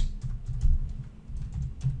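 Computer keyboard typing: a run of quick, uneven keystroke clicks as a word is typed out.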